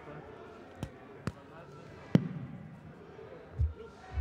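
A few sharp knocks, the loudest about two seconds in with a short ringing tail, then a low thud near the end, over a faint murmur of voices.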